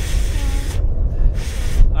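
Two puffs of a man's breath blown into his cupped hands, the first about a second long and the second shorter, over a steady low rumble of wind on the microphone.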